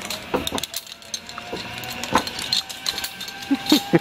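Metal clicks and clinks of zipline hardware: carabiners and a pulley trolley being handled and clipped onto the steel cable, with a faint steady tone from about halfway.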